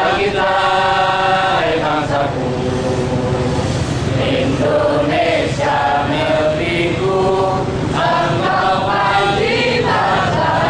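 A crowd of people singing a song together in unison, with slow, held notes.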